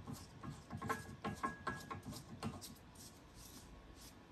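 Threaded handle being screwed by hand into a mug press: a run of light clicks and rubbing scrapes from the turning handle that dies away after about two and a half seconds.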